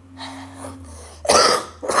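A woman sick with a virus coughing: a quieter breathy sound early on, then a loud cough a little over a second in and another right at the end.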